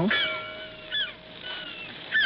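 Short, high bird cries, about three in two seconds, a sound effect in a radio drama, with a faint steady note beneath.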